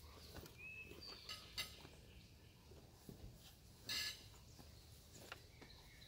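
Near silence with faint rustles and clicks of hunting jackets on hangers being handled; the loudest is a brief rustle about four seconds in.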